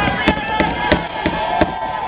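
A quick run of sharp knocks, about three a second, over the voices of a crowd.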